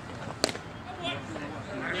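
A single sharp smack about half a second in as a pitch, swung at, pops into the catcher's mitt, with faint voices from the field and dugout after it.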